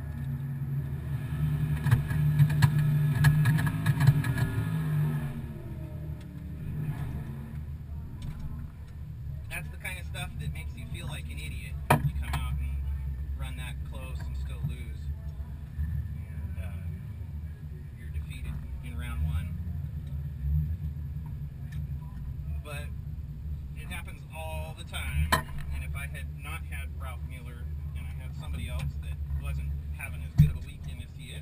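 Drag car's engine idling steadily, heard from inside the cabin, with a louder engine sound that rises and falls over the first few seconds.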